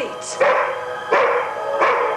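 A dog barking three times, about two thirds of a second apart, over a sustained musical tone; the dog is agitated.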